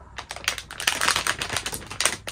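Plastic packaging of a Gundam model kit crinkling and rustling as the bagged kit is picked up and held up: a quick, dense run of crackles and clicks.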